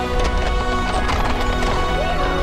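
Galloping horse hoofbeats under loud soundtrack music with long held notes.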